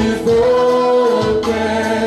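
Worship music: singers and a band performing a praise song with long held sung notes.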